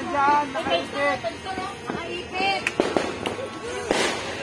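Firecrackers going off in a few sharp bangs, spaced irregularly over the second half, the loudest near the end, over people talking.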